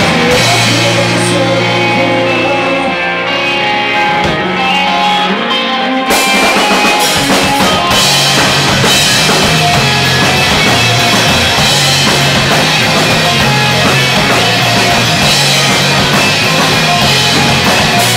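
Rock band playing live: electric guitars over a drum kit. The first few seconds are sparser, with held low notes, and the drums and cymbals come in fully about six seconds in.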